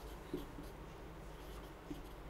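Faint strokes of a marker pen writing numbers on a whiteboard.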